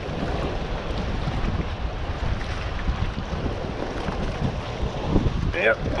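Strong wind buffeting the microphone, a steady low rumble, over choppy water.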